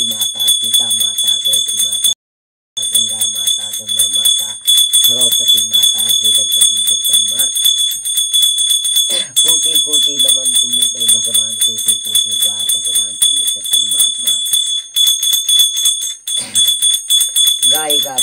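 A small brass hand bell shaken rapidly and without pause, its bright ring steady throughout, while a woman's voice chants a Garhwali jagar invocation underneath. The sound cuts out completely for about half a second a little after two seconds in.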